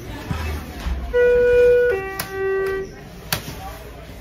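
Schindler hydraulic elevator's chime sounding two notes, a higher one and then a lower one, each under a second long. A sharp click falls during the second note and another about a second later.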